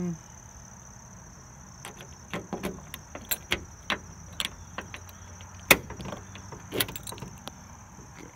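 Car keys jangling and clicking as a GM key is worked into and turned in a 1988 Cadillac Fleetwood Brougham's trunk lock, which sits behind a flip-up crest emblem. A run of small clicks and rattles, with one sharp, louder click about two-thirds of the way through.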